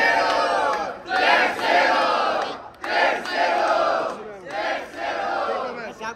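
A crowd of spectators shouting "oh" together in about five bursts of roughly a second each, cheering an MC's rap battle verse that has just ended.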